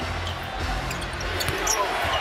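A basketball being dribbled on a hardwood arena court, over the steady murmur of the arena crowd.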